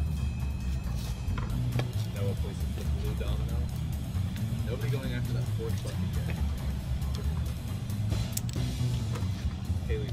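Low, uneven wind rumble on the microphone under a background music bed, with faint voices and a few light clicks.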